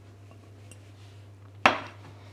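A measuring jug with a spatula in it set down on a kitchen worktop: one sharp knock near the end, over a faint steady low hum.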